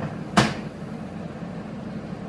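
A single sharp knock about half a second in, from handling parts on the workbench, over a steady low hum.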